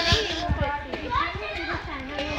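Several voices talking and calling over one another, children's voices among them.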